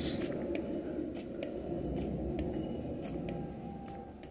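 A spray bottle's squirt of mist onto the small glass fishbowl terrarium, ending right at the start. It is followed by faint, irregular light clicks, a couple a second, over low handling noise.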